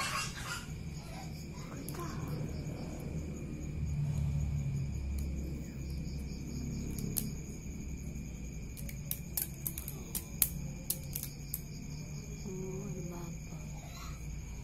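Crickets chirring steadily at several high pitches, with a low murmur beneath. From about halfway through, a run of sharp clicks as stacked wooden popsicle sticks of a black soldier fly egg trap knock against each other while being pulled apart.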